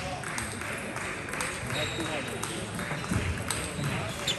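Scattered sharp clicks of table tennis balls striking bats and tables as play goes on at other tables, over a steady murmur of voices in the hall.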